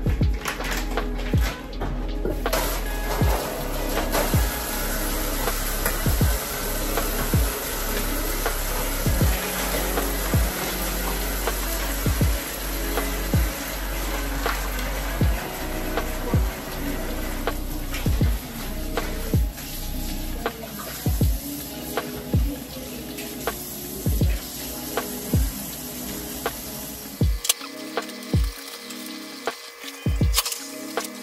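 Background music with a steady beat over water running from a kitchen tap into the sink as raw meat is rinsed. The running water cuts off near the end.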